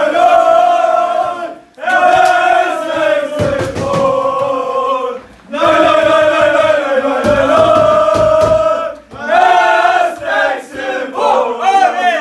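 A group of men chanting a football chant together, loud and in unison, in long phrases with short breaks between them. Low thuds sound twice under the chant, and the phrases turn shorter and ragged near the end.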